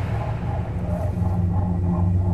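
Low, steady droning film-score music, a held dark chord.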